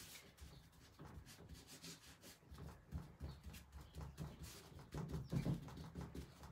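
Faint, irregular rubbing and rustling as rice paper is smoothed flat onto a painted wooden cabinet door by hand with a wad of cling film, pressing down its edges; the rubbing grows louder in the second half.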